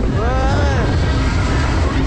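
Superbowl fairground ride in motion, heard from on board: a loud, constant low rumble, with one voice whooping up and down in pitch in the first second.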